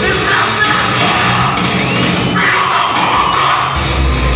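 Heavy metal band playing live, with distorted guitar and a shouted vocal over crowd yells and cheers. The full band with heavy bass and drums comes back in near the end.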